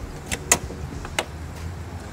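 Metal latch and handle of a Continental Cargo trailer's side door clicking as the door is unlatched and pushed open: three sharp clicks, the loudest about half a second in and another just past the middle.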